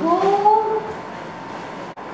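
A woman's drawn-out exclamation "go!", rising in pitch and held for just under a second.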